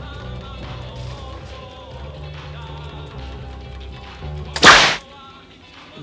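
Electric bass guitar playing a rhythmic riff with the band. About three-quarters of the way through, a single loud, sharp crack sounds as a bass string snaps, and the bass stops.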